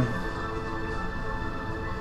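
Film soundtrack music with held, sustained tones, playing from the LG TV's built-in speakers.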